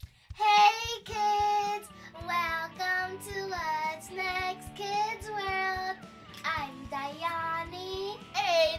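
A child singing a song over backing music with a steady beat, in sung phrases with long held notes.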